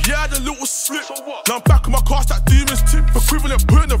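Hip hop track with rapped vocals over a beat. The deep bass drops out for about a second near the start, then comes back in with a hard hit.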